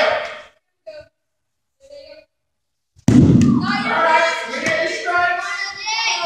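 A sudden loud thump about halfway through, followed by children's voices shouting and yelling for several seconds; earlier, only a few brief voice fragments.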